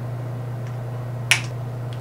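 A steady low electrical hum, with one short sharp click a little past the middle as makeup items are handled.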